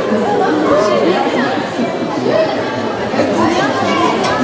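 Indistinct chatter of many overlapping voices in a large gymnasium hall.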